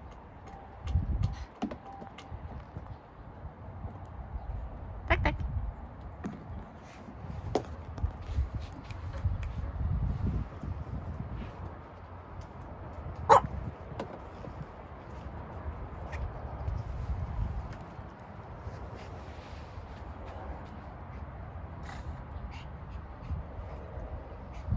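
Small dog chewing a yellow rubber duck toy, with a few short, sharp squeaks or squawks, the loudest about 13 seconds in, over low rumbling noise and scattered small clicks.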